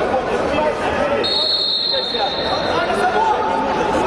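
Spectators and officials chattering in a sports hall, with one blast of a referee's whistle about a second in, lasting just under a second.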